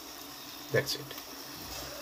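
Chicken korma gravy simmering in a non-stick pan with a steady soft sizzle, and a brief vocal sound from a man a little under a second in.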